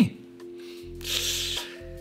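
Soft background music with steady held notes. About a second in comes a short rustling noise, under a second long.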